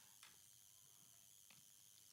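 Near silence: faint room hiss, with two soft clicks, one just after the start and one past the middle.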